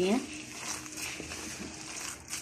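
Bare hand squeezing and mixing a damp, crumbly gram-flour (besan) mixture in a bowl: a soft, irregular crumbling and squishing.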